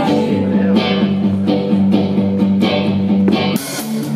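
Live band music led by strummed guitar in a steady rhythm, an instrumental passage of a country-pop song with no singing.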